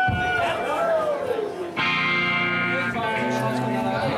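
Amplified electric guitar noise between songs: sliding, wavering tones at first, then about two seconds in a loud chord rings out through the amps and is held.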